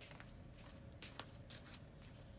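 Near silence: room tone with a low hum and a few faint soft ticks about a second in.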